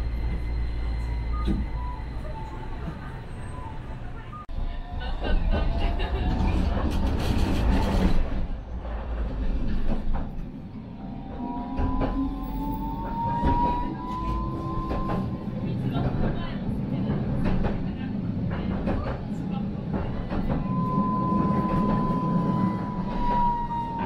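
Electric street tram heard from inside near the cab, pulling away and running along street track: a steady low rumble, a stretch of rattling and clicks from the wheels and car body, then a motor whine that rises in pitch about halfway through as the tram picks up speed. Near the end a second whine holds and slowly falls in pitch.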